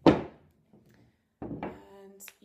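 A single loud thunk as a wooden footstool frame is set down upright on the floor, dying away within about half a second.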